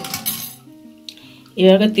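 Stainless-steel idli cups clinking and scraping against the steel steamer as they are handled and brushed with oil, most of it in the first half second. Soft background music runs underneath, and a voice begins near the end.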